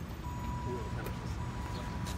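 Low, steady rumble of street traffic, with a thin, steady pure tone that comes in just after the start and holds, and faint voices.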